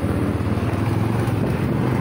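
Steady low engine rumble of a vehicle on the move, with wind noise on the microphone.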